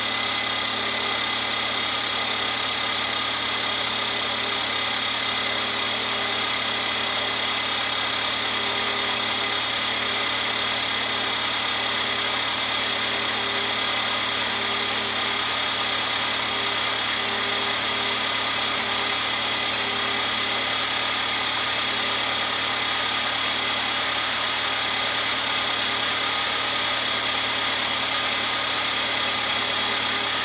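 1953 Farmall Cub's four-cylinder flathead engine idling steadily, warming up shortly after a winter cold start without the choke; it sounds pretty good.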